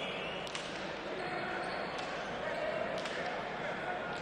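Three sharp cracks of a hand-pelota ball during a rally, about half a second, two seconds and three seconds in, as it is struck and hits the frontón's wall and floor, over a steady murmur of voices.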